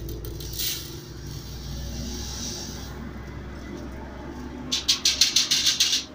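Coarse manufactured sand grains pouring and sliding out of a metal test sieve into a steel weighing pan, ending about five seconds in with a quick run of sharp rattling clicks as the last grains are knocked out. This is a stage of a sieve analysis: the sand retained on the 1.18 mm sieve is being emptied out to be weighed.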